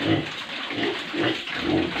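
Weaned piglets feeding on madre de agua leaves: steady noisy chewing, snuffling and rustling of leaves and bedding.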